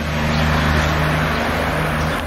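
A motor vehicle running nearby: a steady low engine hum with a rush of noise that swells in the middle and eases off toward the end.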